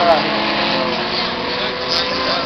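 Several autocross race cars' engines running hard on a dirt track, a steady dense noise, with voices over it.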